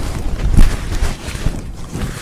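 Mercerised cotton saree fabric rustling as it is lifted and spread out by hand, with irregular low thumps of the cloth rubbing close to the microphone.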